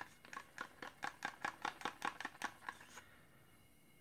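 Wooden craft stick stirring acrylic paint in a plastic cup, tapping and scraping against the cup's sides in a quick run of light clicks that stops a little under three seconds in.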